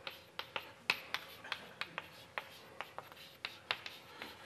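Chalk writing on a blackboard: a string of short, sharp taps and light scrapes, irregularly spaced, as a diagram is drawn.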